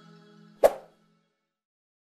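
Background music fading out, ending on a single short percussive hit about two-thirds of a second in.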